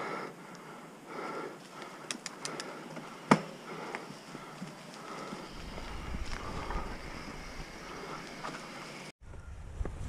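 Norco Aurum downhill mountain bike rolling over a leaf-covered dirt trail: tyre noise and wind on the microphone, with the rider's breathing and sharp clacks of bike rattle, the loudest about three seconds in. The sound cuts out for a moment near the end.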